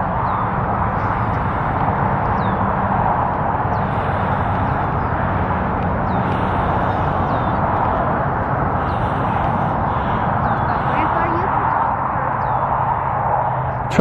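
Steady rushing of flowing river water with a low hum underneath, and faint short high bird chirps recurring every second or two.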